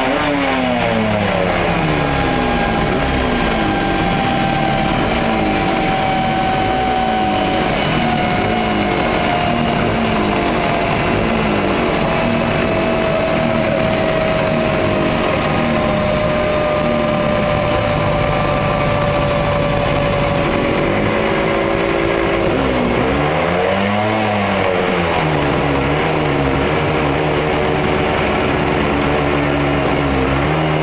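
1979 Suzuki GT250 X7's air-cooled two-stroke twin running on a rolling-road dyno. The revs drop back at the start, then hunt up and down at low speed, with one brief rise and fall in revs about 24 seconds in. Under it, a steady whine slowly falls in pitch.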